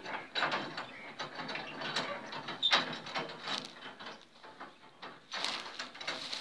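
Irregular metallic rattling and clanking from a loaded livestock pickup's steel cage and rear gate, with one sharper knock a little under three seconds in.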